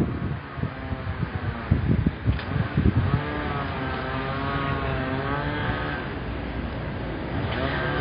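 City street traffic: cars passing, with one vehicle's engine note wavering up and down in pitch through the middle, over a low rumble of traffic and wind on the microphone.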